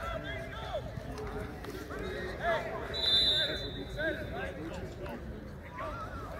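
Several men's voices talking and calling out, overlapping one another. About halfway through, a short, high, steady tone sounds for under a second; it is the loudest moment.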